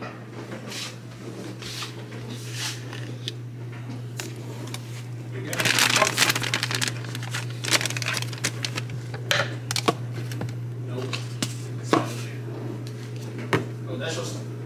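Handling of food packaging on a stone kitchen countertop: crinkling and rustling of aluminium foil and plastic bags, with light knocks and clicks as containers are picked up and set down, the crinkling loudest about six seconds in. A steady low hum runs underneath.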